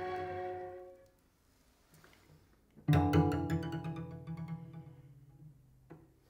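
Solo cello: the end of a loud phrase dies away in the first second, then a pause, and about three seconds in a sudden loud attack that fades out over the next two and a half seconds.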